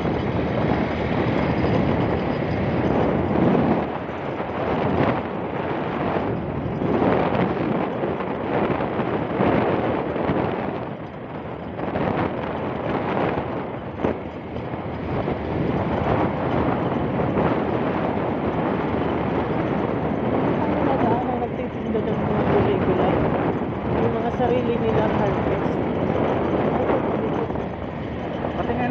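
Riding noise of a moving motorcycle: wind rushing over the microphone over the engine and tyre noise, the level rising and dipping as it goes.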